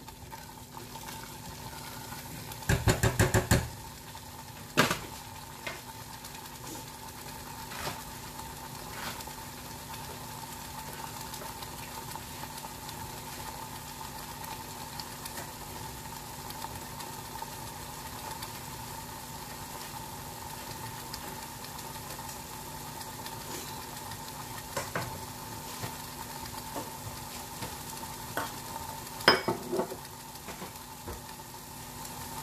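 Tomato-and-spice masala sizzling steadily in a stainless steel saucepan over a high gas flame, with a faint steady hum underneath. About three seconds in, a quick run of loud knocks from the spatula against the pan, and a few lighter clicks later on.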